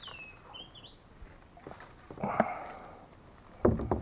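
Splashing and knocks of a paddle and kayak hull as a small animal is pulled from the water, with a sharp, loud clatter near the end. A short, high call that dips and then rises sounds in the first second.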